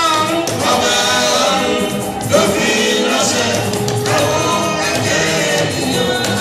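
Live gospel-style band music, a man singing lead through a microphone and PA with backing voices, over continuous accompaniment.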